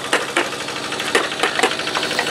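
A small engine running steadily in the background, with a quick, irregular run of sharp clicks and knocks over it.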